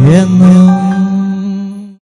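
Vocal group singing the closing held note of a Christian song over keyboard accompaniment: the voice scoops up into one long steady note, which fades out just before the end.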